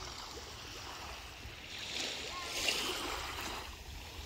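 Small waves lapping gently on a calm sea beach, a soft steady wash that swells a little about halfway through.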